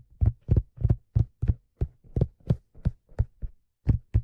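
Fingers tapping on a black leather fedora: a steady run of soft, low thuds, about three taps a second.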